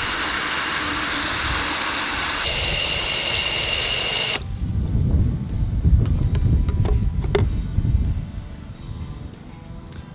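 Ortho Dial N Spray hose-end sprayer jetting water into a plastic bucket in a flow-rate test: a steady hiss with a faint high tone that cuts off suddenly about four seconds in. Low rumbling and a few light clicks follow.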